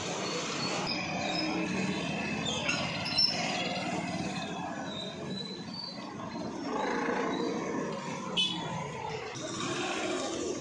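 Street traffic noise from motorcycles, scooters and auto-rickshaws running past, steady throughout, with two brief knocks about three seconds in and again near the end.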